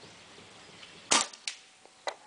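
A single shot from a CCM S6 pump paintball marker about a second in, a sharp crack, followed by a fainter click less than half a second later.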